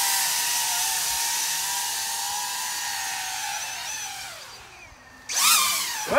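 Small quadcopter drone's propellers whining steadily, then winding down and stopping about four and a half seconds in as it lands. A short loud rush of noise follows near the end.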